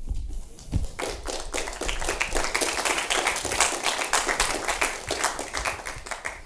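Audience applauding with many separate hand claps, starting about a second in.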